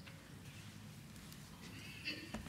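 Quiet room tone: a low steady hum and hiss with a few faint clicks.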